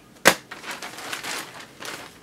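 Handling noises: one sharp knock about a quarter second in, then rustling and light clicking as objects are moved about.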